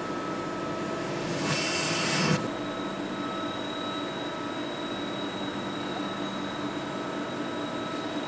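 Heckert HEC 800 horizontal machining centre running behind its closed doors: a steady mechanical hum with a few steady whining tones, and a burst of hiss about two seconds in.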